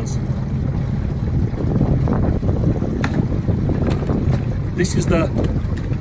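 A steady low rumble of wind buffeting the microphone aboard a boat, with faint clicks and rustles as a hand stirs live crayfish in a plastic tub. There is one sharper click about halfway through.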